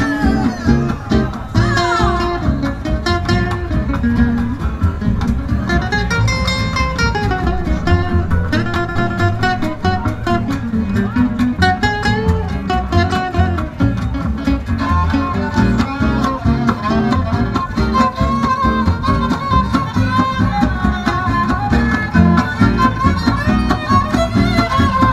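Live acoustic gypsy-jazz quartet playing an instrumental passage with no singing: violin, two acoustic guitars and upright double bass, the guitars strumming a steady rhythm under moving melodic lines.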